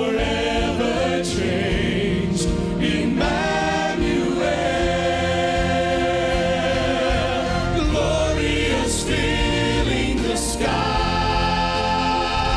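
A man singing a solo line into a microphone, his held notes wavering with vibrato, over sustained orchestral accompaniment in a gospel Christmas style.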